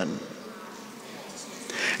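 A short pause in a man's amplified sermon speech: the voice trails off at the start, then only low room noise and a faint hum. Near the end comes a brief hissy intake of breath before he speaks again.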